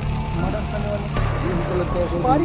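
Background music with a steady low drone under a wavering melodic line.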